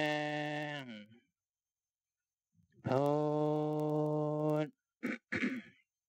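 A Buddhist monk's voice intoning drawn-out syllables at a steady, level pitch, calling the cues for walking meditation: one held note that falls away about a second in, a second held note from about three seconds to nearly five, then two short syllables near the end.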